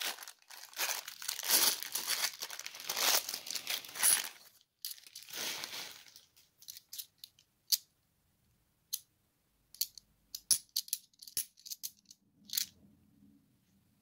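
A clear plastic bag of £2 coins crinkling and tearing open for the first six seconds or so. Then scattered sharp clinks as the bimetallic £2 coins knock against each other in the hands.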